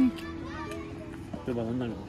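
Short vocal phrases, near the start and again about one and a half seconds in, over background music with a steady held tone.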